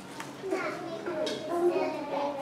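Children's voices chattering, several at once, starting about half a second in.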